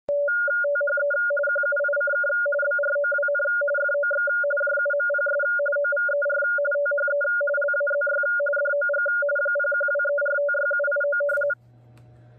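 Radioteletype (RTTY) signal audio: a fast, continuous stream of two alternating keyed tones, one low and one higher, cutting off abruptly near the end.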